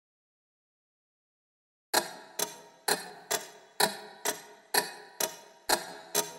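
Silence, then about two seconds in a steady ticking starts: sharp, evenly spaced ticks, about two a second, each with a short ringing decay.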